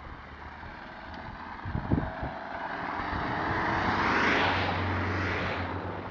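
A car passing on the road, its tyre and engine noise swelling to a peak about four to five seconds in and then fading, over wind and rolling noise on a bike-mounted camera. A few short knocks about two seconds in.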